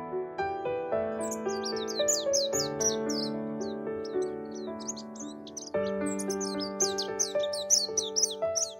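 Gentle background music of keyboard or electric-piano notes, with rapid bird chirps over it from about a second in that break off briefly past the middle and then return.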